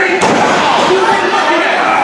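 One sharp smack of an impact from the wrestlers in the ring just after the start, over crowd voices shouting and chattering.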